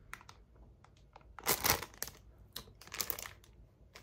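Clear plastic packaging bag crinkling as it is handled, in two louder spells: about a second and a half in and again around three seconds.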